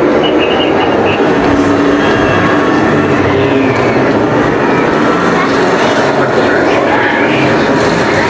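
Roller coaster train running along its steel track as it passes, a steady rumble, with riders' voices over it.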